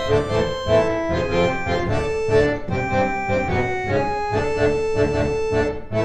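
Two 1950s Yamaha reed organs (pump organs) playing a duet: sustained, reedy chords with moving melodic lines over them. In the second half one long note is held.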